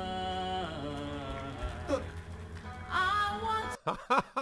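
A male singer sings a slow pop ballad over instrumental accompaniment. He holds long notes and slides between them, singing the lines 'And I… I want to share'.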